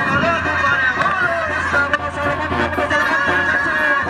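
Live brass band music playing steadily, with a wavering melody line held over a sustained low bass, and crowd chatter underneath.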